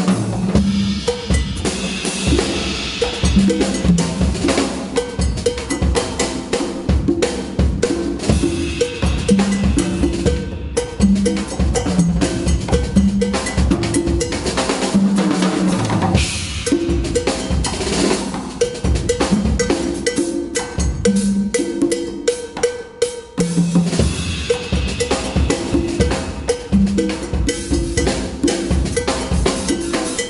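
Drum kit and congas playing together in an unaccompanied percussion passage: a dense, continuous rhythm of pitched conga tones over the drummer's kit strokes.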